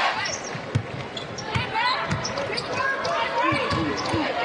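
Basketball bouncing on a hardwood court, a few thumps a second or so apart, with sneakers squeaking in short chirps and arena crowd noise that dies down just after the start.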